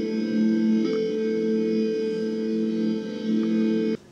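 Electronic tones from a Macintosh Plus played through a guitar effects pedal and a small guitar amplifier, heard as video playback: a sustained, echoing chord-like drone that shifts about a second in and cuts off suddenly at the end.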